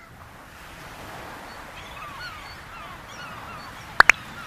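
Fairly quiet outdoor ambience of a steady rushing hiss with small birds chirping, a string of short, curved chirps beginning about a second and a half in.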